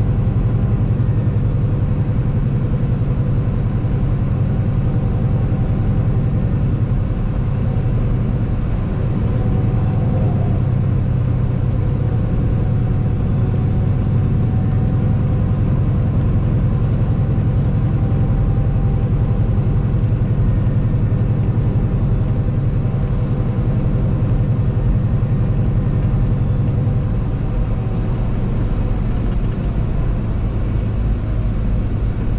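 Steady low drone of a truck's engine and road noise heard inside the cab while cruising on the highway.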